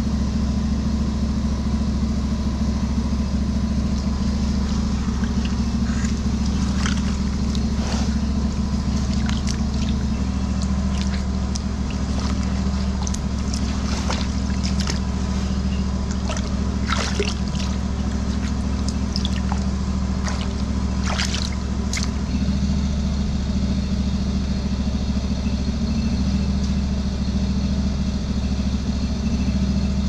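Drain jetter engine running steadily with a low drone, while water splashes and trickles as a hand works in a flooded drain channel, with scattered short splashes in the middle stretch.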